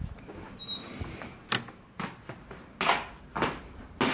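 Faint rustling of a handheld camera being carried, with one sharp click about a second and a half in.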